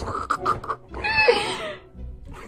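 Golden retriever puppy vocalizing at a hair clip: a few short huffs, then about a second in a brief pitched whine that bends in pitch.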